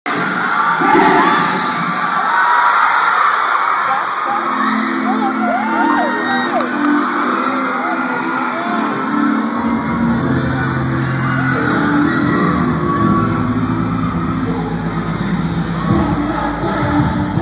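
A crowd of fans screaming and cheering, then a pop song's intro starting over the PA speakers about four seconds in, with a heavy bass line coming in near ten seconds. The screams carry on over the music.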